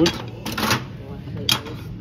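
Old metal hand tools clinking and scraping against one another as a wooden-handled blade is lifted from the pile, with one sharp knock about one and a half seconds in.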